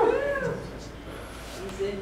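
A man's laughter trailing off in the first half second, followed by a short, faint voiced sound near the end.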